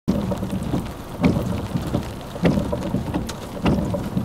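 Rain and thunderstorm noise with a steady low rumble under a supercell, swelling louder three times at even intervals of a little over a second.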